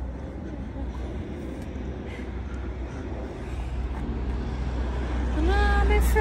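Road traffic noise from a street at night: a steady low rumble that grows louder over the last couple of seconds.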